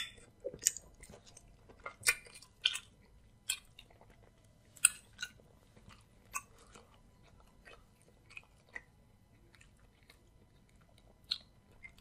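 Close-miked chewing of a mouthful of amala in pepper sauce, with sharp mouth clicks coming thick in the first five seconds and spaced out after that.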